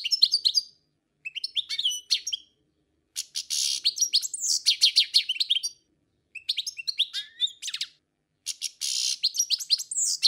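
Bird chirping in quick, high-pitched twittering runs that come in several bursts with short silent gaps between them.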